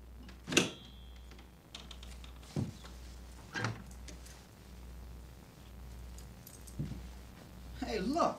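A wooden door being opened by hand as someone steps through it: a few short knocks and clicks over a low steady hum, the sharpest about half a second in.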